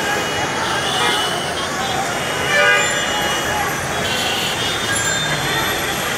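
Steady city traffic noise with vehicle horns honking, the loudest honk about two and a half seconds in.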